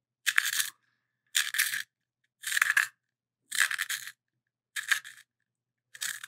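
Blackwing Two-Step Long Point Sharpener's blade shaving a Blackwing 602 pencil as it is twisted by hand: five short scraping rasps, about one a second, one for each turn of the pencil.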